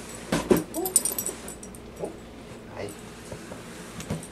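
A dog gives a few short whimpers and yips, the loudest cluster about half a second in, with fainter ones later. Light knocks come from cardboard boxes being moved on the floor.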